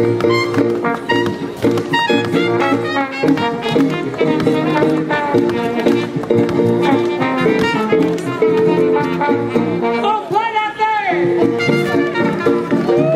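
Live jazz band playing up-tempo swing with horns and a steady beat, with sharp clicks from tap shoes on the dance floor. A swooping pitch near the end.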